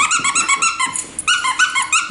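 Squeaky dog toy squeaking in a rapid run of short, high-pitched squeaks as a Samoyed chews it, with a brief pause about a second in.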